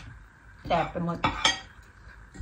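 Metal fork and spoon clinking against a ceramic bowl and plate while eating: two sharp clinks close together about a second and a half in.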